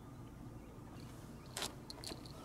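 Steady low outdoor rumble, with a short scuff about one and a half seconds in as a sneaker shifts on the concrete pier.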